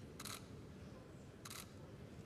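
Two quick camera shutter clicks about a second and a quarter apart, over the low murmur of a crowded hall.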